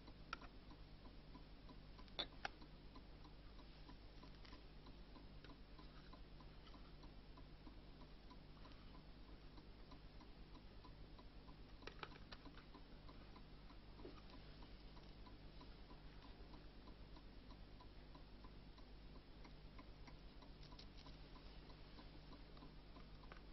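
Near silence: a faint low hum with a faint regular ticking like a clock, broken by a few soft clinks of silver tableware, the clearest about twelve seconds in as the lid of a silver covered dish is lifted.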